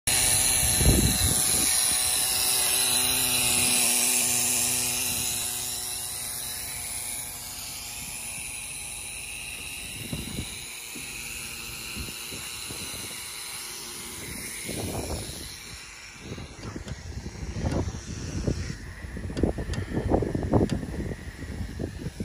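Air hissing steadily out of an off-road truck tyre through an automatic tyre deflator as the tyre is aired down. The hiss is loudest for the first several seconds and then fades away. Near the end, gusts of wind buffet the microphone.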